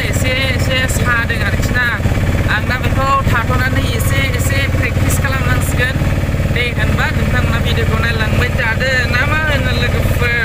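Steady low drone of a bus engine and road noise, heard inside the moving bus's cabin under a man talking.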